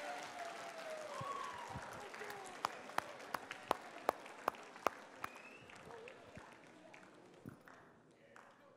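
A standing student audience in a large hall, scattered voices and applause dying away, with a run of about eight sharp handclaps, roughly three a second, in the middle.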